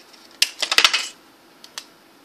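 Aluminum foil crinkling as it is pressed and folded around a cardboard circle: a quick cluster of sharp crackles about half a second in, then a couple of faint ticks near the end.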